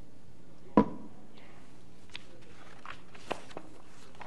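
A single sharp thump with a short ring about a second in, followed by a few light clicks and taps, over a faint steady hum.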